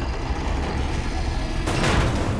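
Cinematic sound effects: a steady deep rumble, then a loud whooshing hit that builds just before the end.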